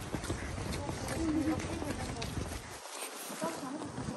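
Footsteps of several people walking on a paved path, with quiet, indistinct talking.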